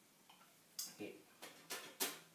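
Electric bass guitar strings struck while muted, giving about four short, sharp percussive clicks in the second half, quiet between them.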